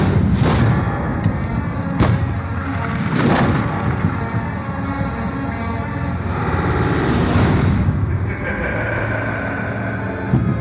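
Dramatic film score with action sound effects: a single sharp gunshot about two seconds in, and several loud rushing swells.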